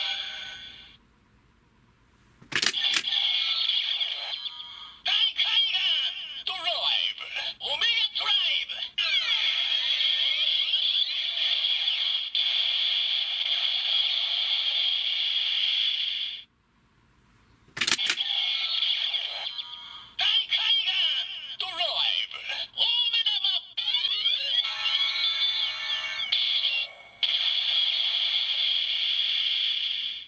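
Kamen Rider Ghost DX Ghost Driver toy belt, with a Drive Ghost Eyecon inserted, playing its electronic announcer voice and music through its small, tinny speaker. It plays two sequences, each started by a sharp plastic click of the belt's mechanism, one near the start and one about halfway through.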